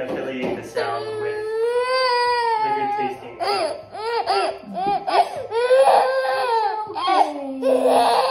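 Baby crying in a run of wails: a long wail about a second in, a few shorter cries in the middle, and another long wail after it, rising again near the end.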